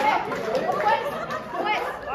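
Several people talking at once in overlapping, indistinct chatter.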